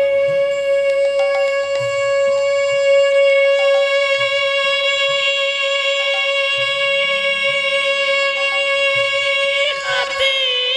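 Bengali devotional kirtan singing: a male voice holds one long, steady note that drops in pitch near the end, over instrumental accompaniment with a soft, repeating low drum beat.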